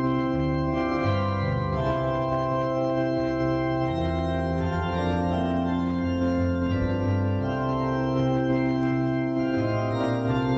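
Organ sound from an electronic keyboard playing slow, sustained chords, with the bass notes moving to a new pitch about every second.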